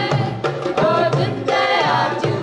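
Two women's voices singing a melody together, accompanied by steady hand-drum strokes and an upright double bass.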